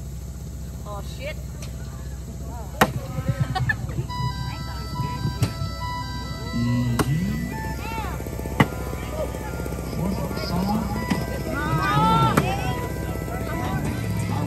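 Bean bags landing with sharp knocks on wooden cornhole boards several times, among people's voices shouting and talking, with music playing in the background.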